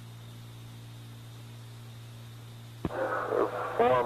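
Steady low hum and hiss of an old archival recording, then a click about three seconds in as a man's voice starts, narrow and thin like a radio transmission.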